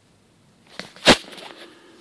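A single sharp knock about a second in, with faint rustling around it: handling noise as the camera is moved.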